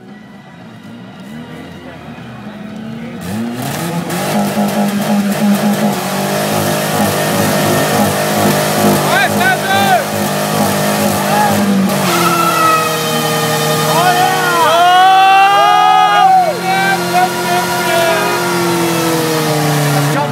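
Ford Escort engine held at high revs in a burnout, its note surging and shifting, with tires spinning and squealing. The sound fades up over the first few seconds, then stays loud.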